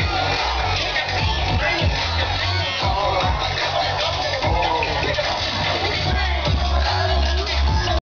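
Live music played loud through a stage loudspeaker system, with a heavy, steady bass line and crowd voices mixed in.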